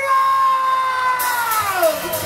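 A rock singer's long, high screamed note, held steady and then falling in pitch near the end, as the lead-in to a heavy metal song.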